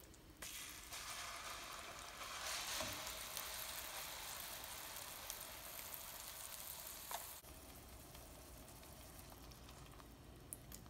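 Hot oil and melted jaggery in a frying pan sizzling as wet garlic-chili paste is poured in. The sizzle starts about half a second in, is loudest about three seconds in, and drops off suddenly after about seven seconds, leaving a faint sizzle.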